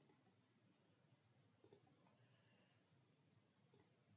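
Near silence broken by three faint, short clicks from a computer being operated: one at the very start, one just before the middle, one near the end.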